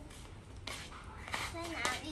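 A young child's voice talking briefly, starting about two-thirds of a second in, over a low steady background hum.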